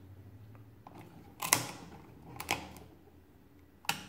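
Mechanism of a 1920s Rapid pinwheel calculator worked by hand: three sharp metal clicks, the loudest about one and a half seconds in, another a second later and one near the end.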